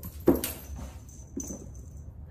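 A small toy ball hitting a tiled shower floor: one sharp knock, then a softer knock about a second later, with a faint high-pitched tone in between.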